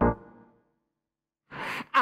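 An electric-piano chord on a stage keyboard rings out and dies away within about half a second, followed by a second of dead silence. Then comes a short breathy rush of air at the harmonica microphone, just before the full band comes in.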